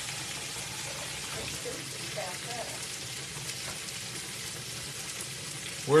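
Meatloaf patties frying in grease in a skillet: a steady sizzle with faint small crackles.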